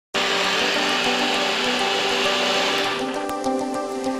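Single-serve blender running under background music, then stopping about three seconds in while the music carries on.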